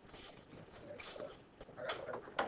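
Faint, broken murmuring of voices too soft to make out, with short hissing sounds, and a voice starting up near the end.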